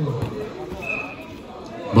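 Men's voices, indistinct, with one brief high squeak about a second in.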